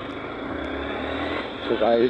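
Motorcycle engine running at low speed, a steady low drone under an even haze of road and wind noise picked up by the rider's mic.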